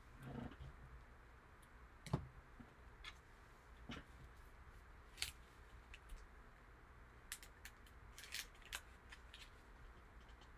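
Faint, scattered clicks and taps of hard plastic card cases being handled in gloved hands, several of them close together near the end, over near silence.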